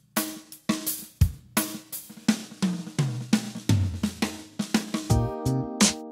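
Backing music built on a steady drum beat with a bass line, at about two to three strokes a second. About five seconds in, held chords come in over the beat as new music begins.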